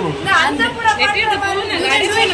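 People talking, several voices overlapping in lively chatter.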